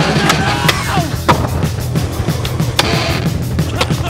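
Skateboard on concrete: several sharp clacks of the board popping and landing, with the rumble of wheels rolling, over loud backing music.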